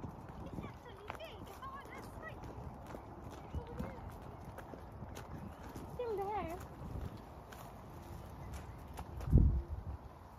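Footsteps crunching on a gravel track at a walking pace, with a louder low thud near the end.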